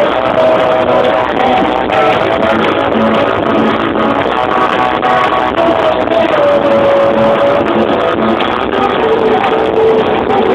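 Live rock band playing, with guitars and a lead singer holding long, gliding sung notes over the band.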